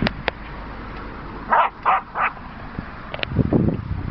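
Jack Russell terrier barking three times in quick succession, about a second and a half in. A couple of sharp clicks at the start and low bumping knocks near the end.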